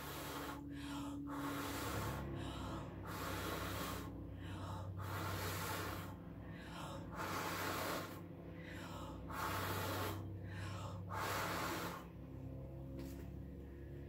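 A person blowing hard by mouth across wet acrylic pouring paint on a canvas, in repeated strong puffs about one a second with quick breaths drawn in between. The puffs stop near the end.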